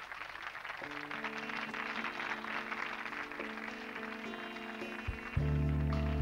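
Live band's instrumental intro to a song: held keyboard chords come in about a second in, and the fuller band with bass comes in louder near the end.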